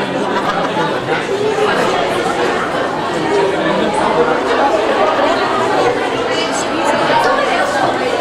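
Many voices talking over one another at once: an audience chattering, with no single voice standing out.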